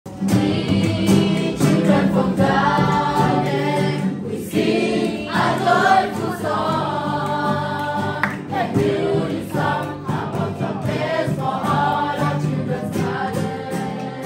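Music: a choir singing a gospel-style song over sustained low notes.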